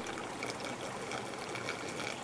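A faint, steady stream of water poured from a watering can splashing into the plastic top tier of a vertical planter.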